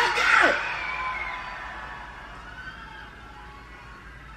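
A man's voice on a microphone shouting an announcement that ends in a falling yell about half a second in. A crowd then cheers and whoops, fading away over the next few seconds.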